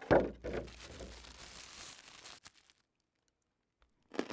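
Plastic sandwich bag crinkling and rustling as it is handled, with a sharper crackle at the start, stopping about two and a half seconds in.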